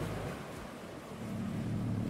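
Small waves washing onto a sandy beach, a soft even wash of surf, while background music fades out early on.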